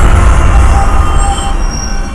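Trailer sound-design hit: a heavy low rumble with thin, high metallic screeching tones over it, fading a little toward the end.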